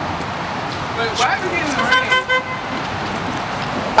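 A car horn sounds several short toots about a second and a half in, the ride arriving to pick up the kids. Steady outdoor noise runs underneath.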